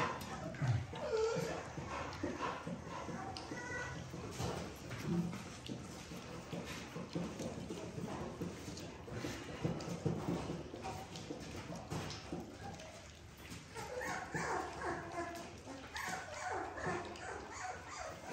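A litter of 3.5-week-old puppies lapping and slurping thin, milky puppy mush from stainless steel saucer feeders: a busy run of small wet clicks, with a few short whimpers near the start and again toward the end.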